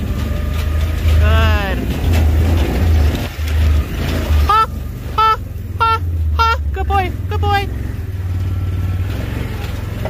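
A dog team pulls a wheeled dryland rig along a dirt trail, with a steady low rumble from the rolling rig. A voice calls a drawn-out command to the dogs about a second in, then six short calls in quick succession around the middle, as the leader takes the "gee" (right) command.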